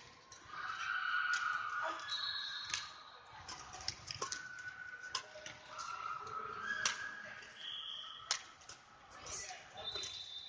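Badminton doubles rally: sharp racket hits on a shuttlecock about every one to two seconds, with short high shoe squeaks on the synthetic court mat as players change direction.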